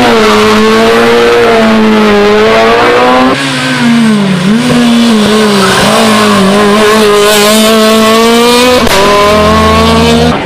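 Small rally hatchback engines held at high revs through tight corners, one car after another: a Peugeot 106 first, then a Fiat Seicento. The engine note stays high and strained with brief dips as the drivers lift, and it changes abruptly about a third of the way in and again near the end as one car gives way to the next.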